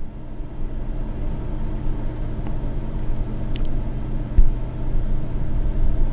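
Steady low rumble with a faint hum, with a brief click and then a single low thump about four seconds in.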